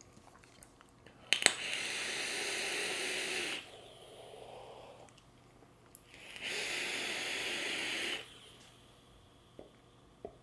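Two drags of about two seconds each on a Kanger Dripbox squonk mod and its dripping atomizer, each a steady airy hiss of air drawn through the atomizer. The wick has just been squonked full of e-liquid. A softer breath comes between the drags, and faint puffs of exhaled vapour follow near the end.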